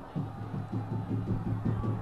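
A fans' charanga band playing in the stadium stands: drums keeping a quick, steady beat over the crowd.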